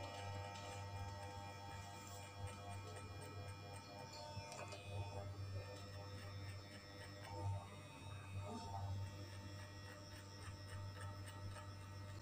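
Electric hair clipper buzzing with a steady low hum as it trims short hair at the side of the head, over faint background music.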